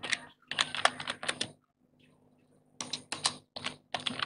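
Computer keyboard typing: a quick run of keystrokes, a pause of about a second, then a second run of keystrokes.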